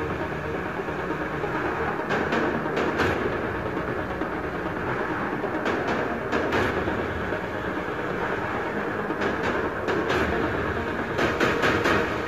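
Opening theme music of a television news-talk show: a dense, steady instrumental with a driving pulse and a few sharp accent hits.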